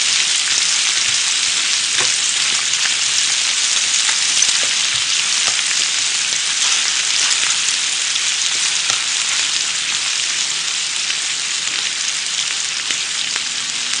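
Smoked duck slices, dumplings and sausages sizzling steadily on a hot tabletop griddle.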